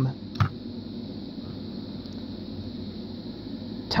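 Steady background room tone, a low hum with faint hiss, with a single light click about half a second in.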